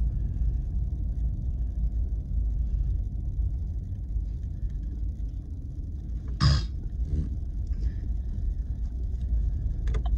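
Steady low rumble of a Chevrolet Silverado 1500 pickup driving slowly over a snow-covered road, heard from inside the cab. A short laugh breaks in about six and a half seconds in.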